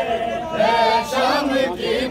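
A noha, a Shia mourning lament, sung unaccompanied by a group of male voices in chorus. The phrases have long, wavering held notes.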